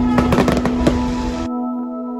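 Fireworks going off: a dense run of sharp pops and crackles over a rushing hiss, cutting off suddenly about one and a half seconds in. Steady background music plays underneath.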